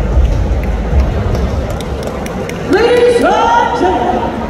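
Arena crowd murmur over low background music. Near the end, the ring announcer's amplified voice comes in over the PA with long, drawn-out words that echo around the hall, beginning the call to the judges' scorecards.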